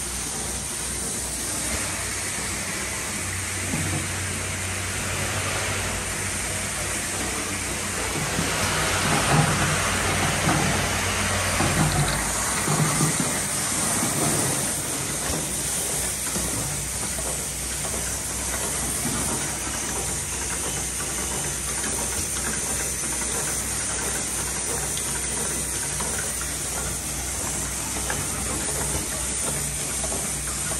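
Cap plug inserting and pressing machine for 5-gallon water barrel caps running, with a steady hiss of compressed air from its pneumatic cylinders. A low hum, typical of a vibratory bowl feeder, stops about twelve seconds in, and between about eight and fourteen seconds the sound grows louder with irregular knocks and clatter.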